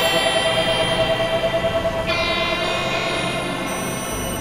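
Experimental electronic music made of several tracks layered at once: sustained synth tones and drones with a ringing, bell-like quality. A fresh stack of bright high tones comes in about two seconds in.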